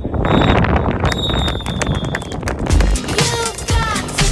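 A referee's whistle blows one long, steady blast about a second in, over open-air noise on the pitch. About three seconds in, background music with a heavy beat and a singing voice takes over.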